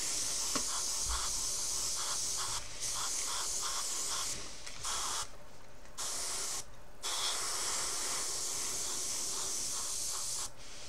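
Airbrush spraying paint, a steady hiss of air that cuts out for moments four times and starts again as the spray is stopped and resumed.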